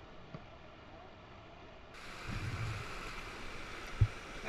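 Rushing whitewater, faint for the first two seconds, then louder and closer after a sudden change about halfway, with a few low thumps.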